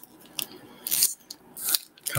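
Foil booster pack wrapper crinkling as it is handled and torn open, in a few short bursts.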